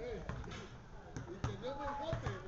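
A mobile phone knocked against a hard tabletop as it is handled and tapped, with a couple of light knocks around the middle, under quiet voices.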